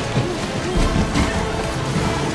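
Loud film score over a chase, with sharp hits and rushing water effects mixed in.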